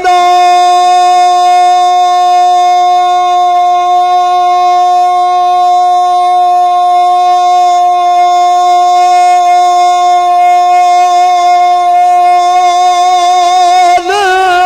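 A male naat reciter holding one long sung note unaccompanied, sliding up into it at the start and keeping it steady and loud for about fourteen seconds, with a slight waver creeping in near the end.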